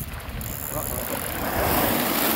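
Wind buffeting a phone microphone over open water, with a rushing hiss of splashing water that grows louder through the second half as a school of baitfish bursts from the surface.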